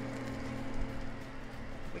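Lemon ricotta pancake batter sizzling in melted butter in a small saucepan, steady throughout, over a low steady hum.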